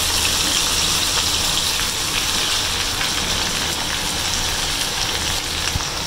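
Chicken pieces and sliced onions sizzling steadily as they fry in hot ghee in a pan.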